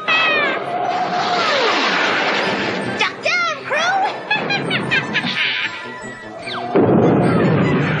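Cartoon sound effects of a flying cauldron taking off: a long rushing whoosh, a few short squealing cries in the middle, then a second, louder whoosh near the end, all over background music.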